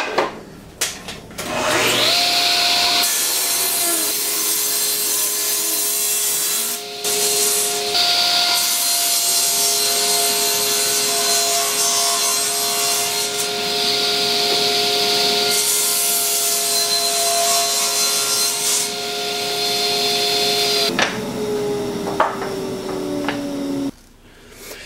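Table saw switched on, its motor whining up to speed, then running with a steady hum while a wooden board is cut in several passes, each cut adding a loud rasping noise. Near the end the saw is switched off and its tone falls as the blade coasts down.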